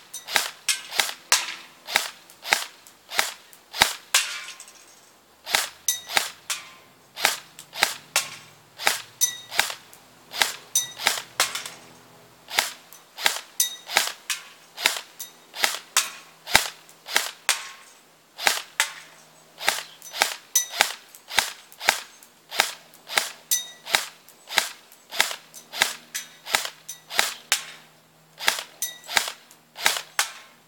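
Battery-powered airsoft electric rifle (M4 style) firing single shots in quick succession, sharp cracks about two or three a second with a few short pauses. The owner says the battery isn't well charged, so the gun isn't shooting strongly.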